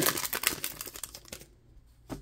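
Foil trading-card pack wrapper crinkling in the hands as it is opened, the crackle dying away about a second and a half in.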